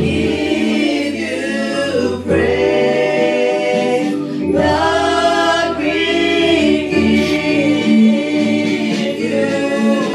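A group of voices singing a church praise song over steady, held chords underneath.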